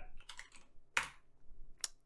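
Computer keyboard keys being typed: a few light taps, with a sharper keystroke about a second in and another near the end.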